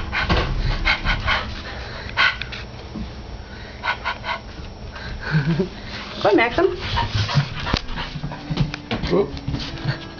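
Chow chow puppy whining, with one wavering whine about six seconds in, amid repeated knocks and scuffling close to the microphone.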